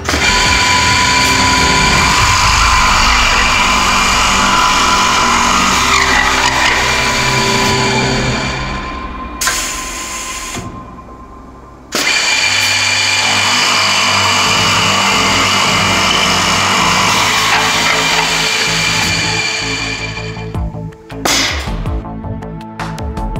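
Five-spindle drill head of a GANNOMAT Master solid-wood boring machine running and drilling holes into a solid wood block, with a steady motor whine over the noise of the cutting. It runs for about eight seconds, fades away, then starts again suddenly about halfway through for a second run of about eight seconds. Background music plays underneath.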